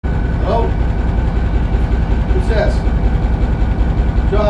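Diesel locomotive engine idling, a loud steady low rumble heard from inside its cab.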